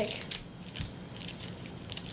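Crinkling and rustling of a small plastic blind bag being pulled open by hand, busiest in the first half second and then sparser and fainter.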